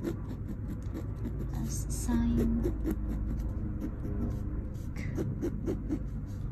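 Ballpoint pen scratching across textured canvas in short, quick strokes, several a second, over a low background rumble.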